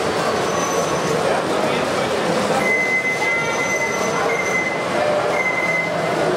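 Model diesel locomotive hauling flat wagons along the layout track, with a thin high-pitched squeal that comes and goes in the second half, over the steady murmur of an exhibition-hall crowd.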